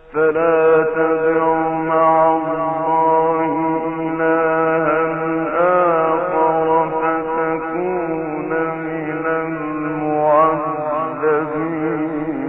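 A male Quran reciter chanting one long phrase in the ornamented mujawwad (tajweed) style, the voice entering suddenly and holding drawn-out notes with wavering melismatic turns.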